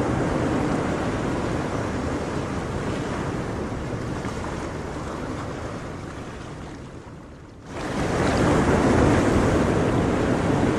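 Ocean surf washing steadily, fading slowly over most of the stretch, then surging back suddenly near the end and staying loud.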